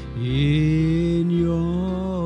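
Slow worship music from a church band: a held melody note slides up just after the start and sustains with a slight waver over a steady low bass note.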